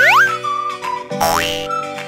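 Cartoon sound effects over children's music: a springy rising glide right at the start and another just after a second in, over steady held chords.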